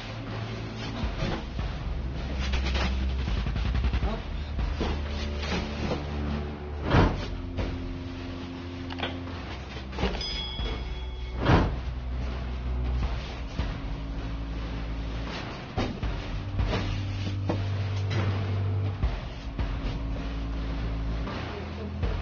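Hand hammer striking rock in irregular knocks, with two heavier blows about seven and eleven and a half seconds in, over background music.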